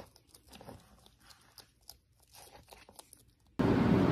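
Faint, scattered crunches and clicks of a bearded dragon chewing mealworms from spilled feed. Near the end a loud, steady outdoor noise cuts in suddenly.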